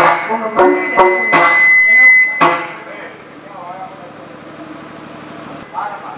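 Loud amplified voices of stage actors arguing, punctuated by several sharp percussion strokes and a briefly held high tone. From about halfway through, quieter music from the accompanying stage band follows.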